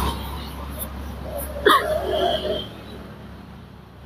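A woman crying, with a sharp sobbing catch of breath a little under two seconds in and a brief whimper after it; the crying fades toward the end.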